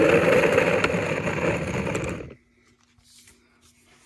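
Handheld cordless driver motor running steadily for about two seconds, then stopping abruptly.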